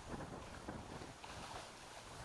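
Faint outdoor background noise: a low, uneven rumble under a soft steady hiss.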